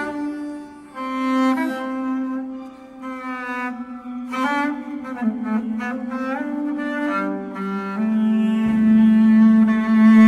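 Swedish harp bass, a 3D-printed, carbon-fibre-wrapped double bass with sympathetic strings, played with a bow: a slow line of long held notes, some sliding into pitch, with a louder sustained note from about eight seconds in.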